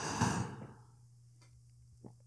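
A man's single soft exhale, about half a second long at the start and fading away, followed by near quiet with a faint steady low hum underneath.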